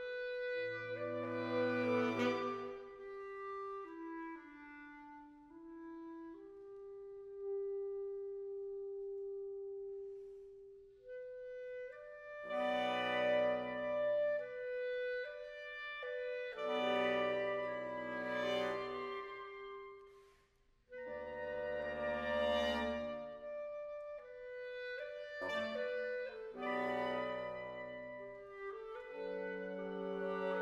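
A mixed woodwind quintet of clarinet, oboe, bassoon, saxophone and bass clarinet playing held notes and chords in short phrases. A thin stretch with a lone low line runs through roughly the first ten seconds. Fuller, louder chords follow, broken by a brief pause about twenty seconds in.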